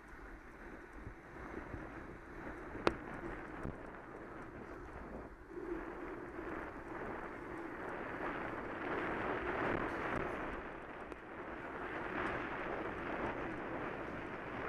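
Wind rushing over the microphone of a moving bicycle, with tyre and traffic noise from the street, growing louder after about six seconds. A single sharp click comes about three seconds in.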